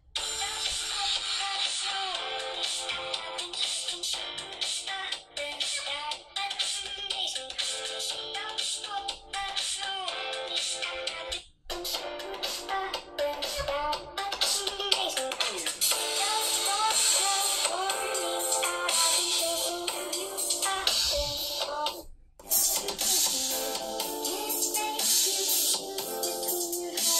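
A pop song with singing, played at full volume through the built-in loudspeakers of three smartphones, a Sony Xperia Z, a Samsung Galaxy S4 and an HTC One, one after another. The music cuts out briefly twice, about 11 and 22 seconds in, where playback passes from one phone to the next.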